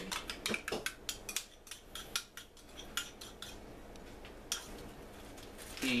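A quick run of light clinks and taps of a small ceramic bowl knocking against a stainless steel mixing bowl as beaten egg is emptied into ground beef. The taps are thick at first, then thin out, with one more clink later on.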